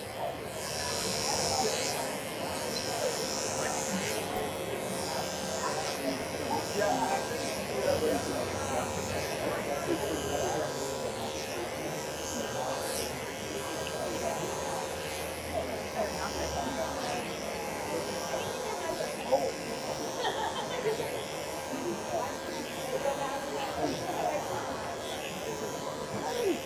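Andis Pulse ZR II cordless dog clipper with a stainless steel attachment comb, running with a steady buzz as it is drawn through a doodle's coat. Voices are heard in the background.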